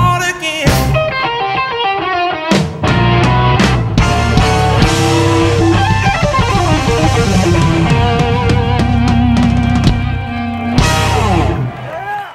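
Live blues-rock band playing loud: electric guitar leads through Marshall amps over drums and bass, closing on a final hit near the end that rings out and fades.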